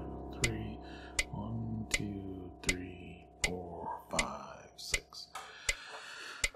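A chord on a digital piano held and slowly fading under a fermata, with new notes coming in near the end. Over it a metronome clicks steadily at about 80 beats a minute.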